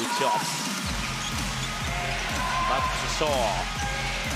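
A basketball being dribbled on a hardwood court, with a few short sneaker squeaks near the end, over music with a steady bass beat that comes in about a second in.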